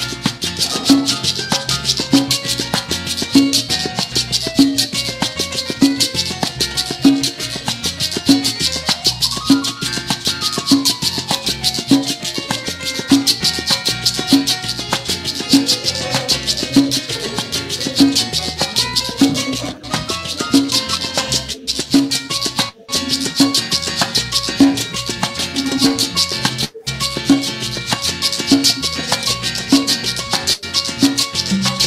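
Live salsa band in an instrumental section, the piano taking a solo over upright bass and Latin percussion with timbales, the bass and drums keeping a steady pulse a little under twice a second. The sound drops out briefly a few times in the latter part.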